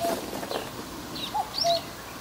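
Birds calling: a handful of short, separate chirps and whistled notes, with the loudest pair about one and a half seconds in.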